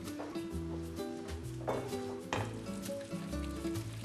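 Butter-and-cream sauce simmering and sizzling in a nonstick frying pan while a wooden spoon stirs it, over soft background music.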